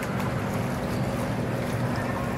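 Steady wash of noise from a gondola gliding along an indoor canal: water moving past the hull over a low, steady hum.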